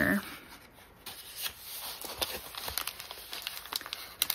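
Paper rustling with soft, scattered taps and clicks as a sewn paper envelope is tucked into a paper journal and its pages are handled.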